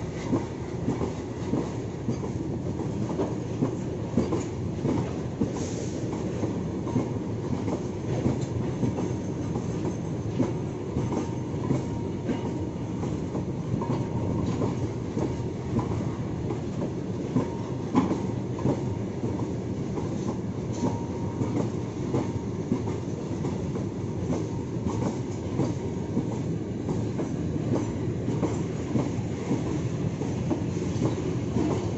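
Freight train of BOBYN bogie hopper wagons rolling past close by, its wheels clattering steadily over the rail joints, with a faint wheel squeal now and then.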